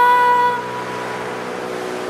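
A held sung note from a vocalist in Indian classical style fades out about half a second in, leaving a quieter, steady tanpura drone.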